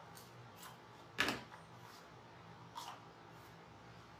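Scissors snipping through wired ribbon once, about a second in, with a fainter click a little before the end, over the steady hum of a room fan.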